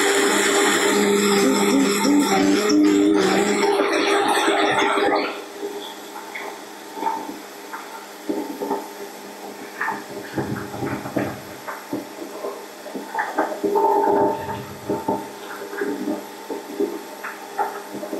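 Countertop blender running on pancake batter, a loud steady motor noise that drops away suddenly about five seconds in. Background music with light, scattered beats fills the rest.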